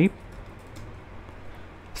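Faint typing on a computer keyboard over a steady low hum.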